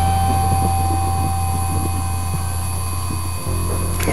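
A steady low drone with a thin, high-pitched whine held above it. The drone shifts slightly near the end.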